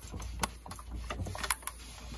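A few scattered light clicks and knocks from a steam iron being handled and pressed over folded fabric on an ironing board, over a faint low hum.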